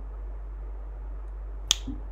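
A single sharp finger snap near the end, over a faint steady low hum.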